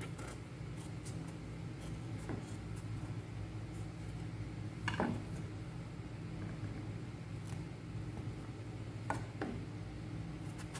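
A kitchen knife cutting through a large green brinjal on a wooden chopping board, with a few short knocks as the blade meets the board, the loudest about halfway through. A steady low hum runs underneath.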